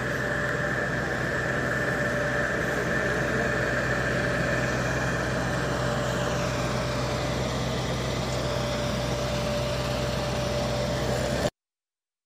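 Steady mechanical drone with a low hum and a constant whine over it, cutting off abruptly near the end.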